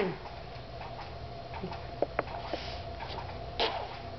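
Quiet room with a faint steady hum, a few small sharp clicks about two seconds in, and a short breathy puff near the end.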